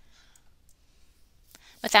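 Near-silent pause in a lecture with a couple of faint clicks, then a speaking voice starts right at the end.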